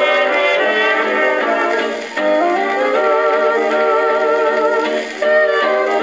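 A 1932 dance-band fox trot playing from a 78 rpm shellac record: an instrumental passage with a wavering melody line over the band, thin-sounding with no deep bass, briefly dipping between phrases about two and five seconds in.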